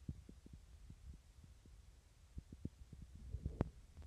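Faint low rumble with irregular soft thumps, the noise of a hand-held phone's microphone outdoors, and one sharper knock about three and a half seconds in.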